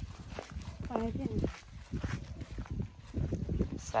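Footsteps on dry sandy ground, with a short vocal sound about a second in and another near the end.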